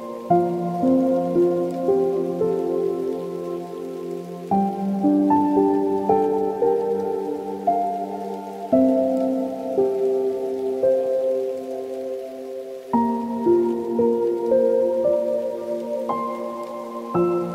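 Soft solo piano playing a slow, calm piece: a low chord struck and held about every four seconds under a gentle melody of single notes, with a faint steady hiss underneath.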